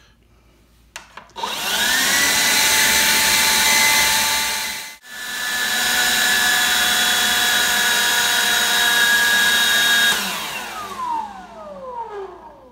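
DeWalt 20V XR brushless cordless leaf blower spinning up with a rising whine about a second in and running steadily at full power, with a brief break near the middle. Near the end it winds down with a falling whine as the battery cuts out at the end of its run-time test.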